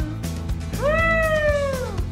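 A single drawn-out cat meow that rises quickly and then slides slowly down in pitch, over background music.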